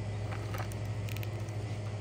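Steady low hum of store room tone, with a few faint light rustles or ticks about half a second and a second in.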